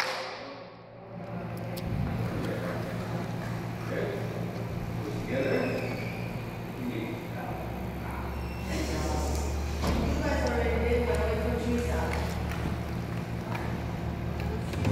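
Indistinct voices talking softly, with a low steady hum coming in about halfway through.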